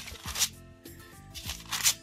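Thin Bible pages being flipped, two quick papery swishes about a second and a half apart, over soft background music.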